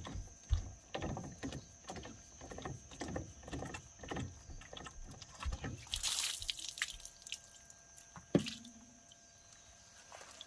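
Plastic housing of a GE whole-house water filter being unscrewed and lifted off, with repeated small plastic knocks and scrapes, then water splashing out of the bowl onto the ground about six seconds in. A sharp hollow knock a little past eight seconds as the housing is set down on concrete.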